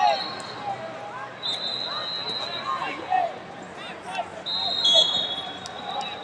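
Busy wrestling-arena floor: scattered shouting voices and short squeaks from around the hall. A long, steady high-pitched tone sounds about a second and a half in, and another starts at about four and a half seconds and runs on.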